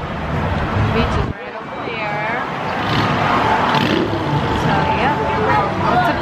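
Cars going by on a busy multi-lane road, with people talking in the background. The low rumble drops off sharply a little over a second in, then builds again.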